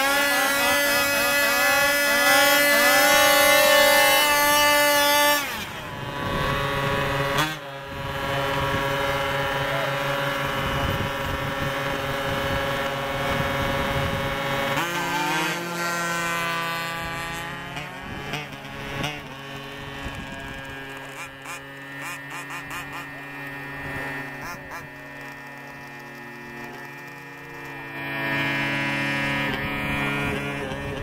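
Small gasoline engines of 1/5-scale RC dragsters running. They are revved hard for about the first five seconds, settle into steady running, shift pitch again about halfway through, and rise once more near the end.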